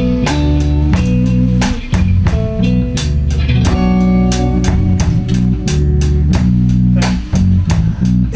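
A live band playing an instrumental passage: electric bass guitar lines to the fore, with electric guitar and a steady drum-kit beat.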